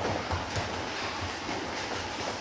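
Bare feet stepping and shuffling on judo mats during grip-fighting, with uneven soft thuds.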